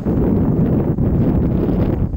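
Strong wind buffeting an action camera's microphone: a loud, steady, low rumble.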